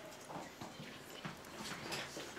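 Faint classroom background with a few light knocks and taps scattered through it, the clearest near the end.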